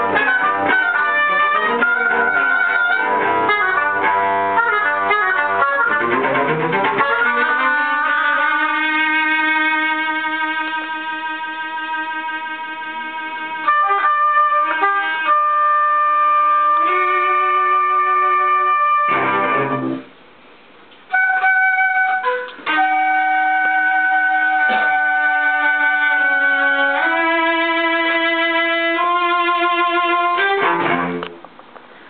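A small instrumental ensemble rehearsing a piece of chamber music. It plays quick-moving notes for the first several seconds, then long held chords, with a short break about twenty seconds in before the held chords resume.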